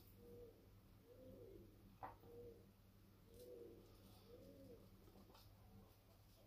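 Faint pigeon cooing, a run of short low coos about one a second, with a single sharp click about two seconds in.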